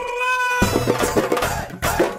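A short held pitched tone, like a comic sound-effect sting, then background music with a steady drum beat coming in about half a second in.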